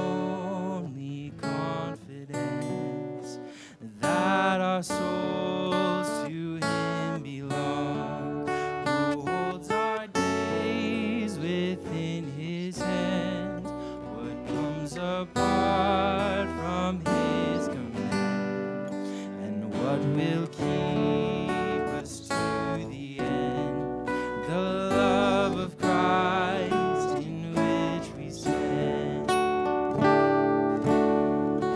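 Worship song: voices singing a hymn over strummed acoustic guitar.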